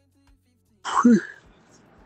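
A man's voice about a second in: a short breathy, throat-clearing sound merging with the word "know", trailing off into a faint exhaled sigh.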